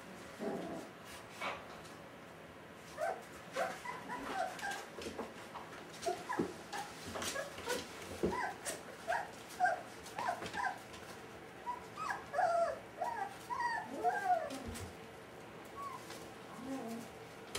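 Five-week-old Brittany puppies whimpering in many short, high squeaks and yips in quick succession from about three seconds in. A few light knocks come among them.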